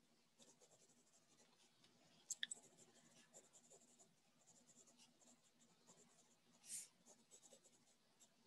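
Faint scratching of a pen writing on paper, a run of fine ticks against near silence. A few sharper clicks come a couple of seconds in, and a brief soft hiss comes near the end.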